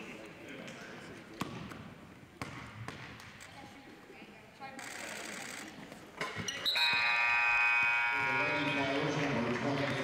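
A basketball bounced a few times on a hardwood gym floor during a free-throw routine in a quiet gym. About seven seconds in, a steady horn-like tone sounds for a second or so, followed by voices.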